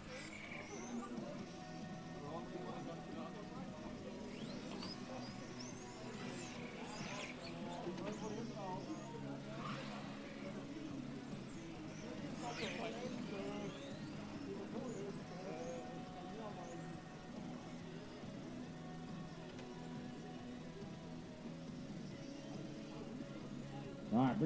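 Faint trackside ambience: low background music and voices, with electric RC touring cars whining past a few times, their pitch sweeping up and down as they go by.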